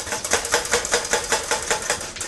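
White plastic two-slice toaster shaken upside down over a metal baking sheet. It rattles in quick, even strokes, about six or seven a second, as crumbs are knocked out onto the tray.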